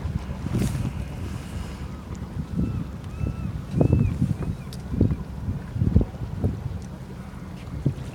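A sailboat's auxiliary engine running steadily as the boat motors along, a low drone, with gusts of wind buffeting the microphone about halfway through.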